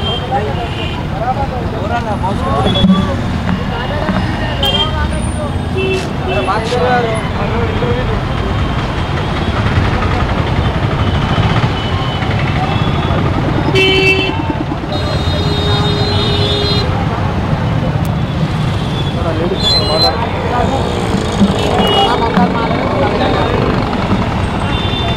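Busy roadside market: people's voices talking over the running of passing motorbikes and auto-rickshaws, with vehicle horns tooting, including a short toot and then a longer horn blast a little past halfway.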